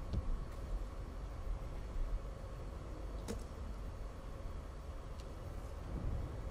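Badminton rally: a few sharp cracks of a racket hitting the shuttlecock, spaced one to two seconds apart, the loudest about three seconds in, over a low steady hall hum.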